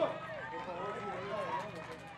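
Several voices calling out at once across an outdoor football pitch during play, overlapping and unclear, with no single voice standing out.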